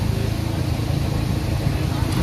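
Forklift engine running steadily, a low even hum, with faint voices around it.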